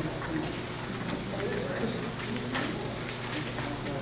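Congregation finding the hymn in their hymnals: pages rustling and turning with scattered clicks, over faint murmured voices.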